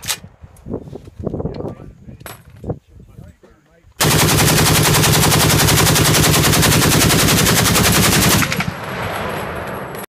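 A Browning M1919 'shorty' machine gun chambered in 8mm Mauser firing one long unbroken burst of automatic fire, starting suddenly about four seconds in and lasting about four and a half seconds. After it stops, the echo rolls on and fades.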